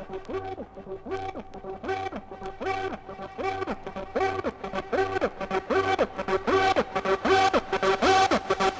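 1997 hardcore techno track: a repeating synth riff of short notes that bend in pitch, about two a second, over a low bass pulse. The high percussion thins out and then builds back in, and the track grows louder toward the end.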